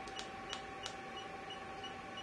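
980 nm diode laser machine sounding a short, faint high beep about three times a second, in step with its laser pulses, over a steady electronic whine. Three sharp clicks come in the first second.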